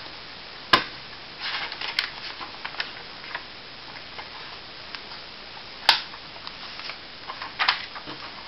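Paper workbook pages being turned by hand: short papery rustles, with two sharp clicks about a second in and near six seconds that are the loudest sounds.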